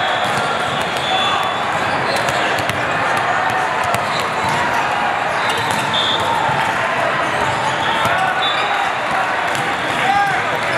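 Busy indoor volleyball hall with many courts in play: volleyballs being hit and bouncing heard as scattered sharp smacks, sneakers squeaking, players' voices, and short high whistle blasts from around the hall, all ringing in the big room.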